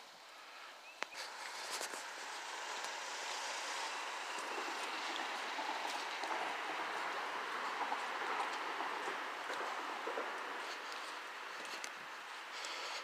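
Footsteps through dry fallen leaves on a trail, a steady rustling crunch that builds from about a second in.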